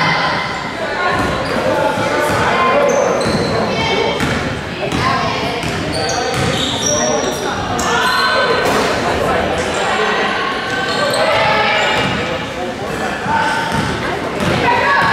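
Basketball bouncing and being dribbled on a hardwood gym floor, with sneakers squeaking and players and spectators calling out, echoing in a large gymnasium.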